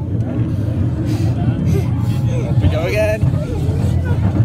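Steady low rumble of a children's rollercoaster car running along its track. A brief high voice comes in about three seconds in.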